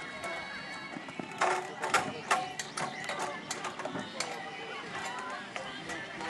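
A series of irregular sharp knocks and clatters, several a second and loudest in the first half, over distant shouting voices.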